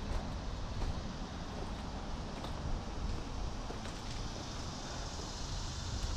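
Steady outdoor background noise with a low rumble, like light wind on the microphone; no engine is running.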